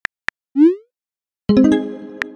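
Phone-keyboard tap clicks from a texting app, then a short rising blip about half a second in as the message is sent. About a second and a half in, a rapid run of plucked-sounding musical notes sounds together and rings out.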